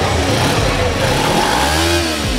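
Motorcycle engine running and being revved, the pitch rising and falling again near the end.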